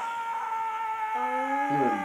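A long, high sustained cry or tone from the anime's soundtrack, slowly falling in pitch, with a lower tone joining about a second in.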